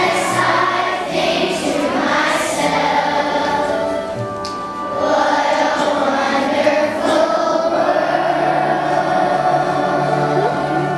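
A large choir of fourth-grade children singing together in phrases, with a brief lull about halfway through before the voices swell again.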